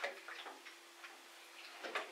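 Faint, irregular clicks and ticks over a low steady hum, a few in two seconds, with the loudest at the start and near the end.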